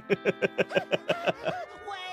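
A man laughing hard, a quick run of 'ha' bursts about six a second that trails off near the end.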